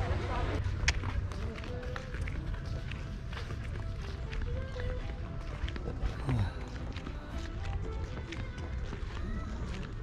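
Footsteps and handling noise from a handheld camera carried at a walk on a paved path, as many small knocks and clicks, over a steady low rumble of wind on the microphone. Faint voices of passers-by are mixed in.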